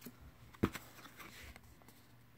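Handling noise from trading cards being moved about: one sharp click about half a second in, with a few faint ticks and rustles around it.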